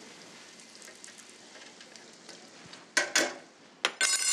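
Corn fritters frying in a deep fryer's oil at 325 degrees: a faint, steady sizzle. About three seconds in, a short louder burst of breathy laughter, then a brief click.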